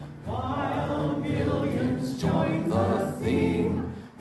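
Choir and congregation singing a hymn in church, in long sung phrases with a brief pause for breath just after the start.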